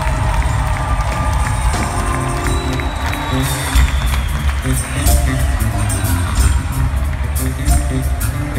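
Live rock band playing an instrumental vamp under the band introductions, with heavy drums and bass carrying a steady groove. An arena crowd cheers over the music.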